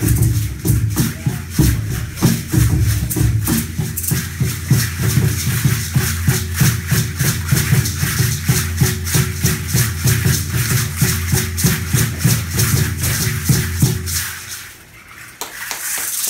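Tall upright wooden hand drum (huehuetl) beaten in a fast, steady rhythm, with a hand rattle shaken along with it and a steady low tone underneath. The music stops about a second and a half before the end.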